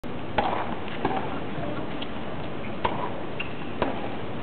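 Tennis ball struck with rackets in a rally that opens with a serve: four sharp pops spaced about a second or two apart, over a steady low crowd murmur.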